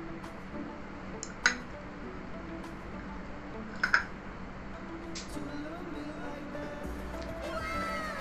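Soft background music, with a sharp porcelain clink about four seconds in as a coffee cup is set down on its saucer. A shorter click comes a second and a half in.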